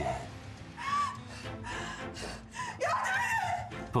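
Background music with a woman crying: a few short sobs and gasps.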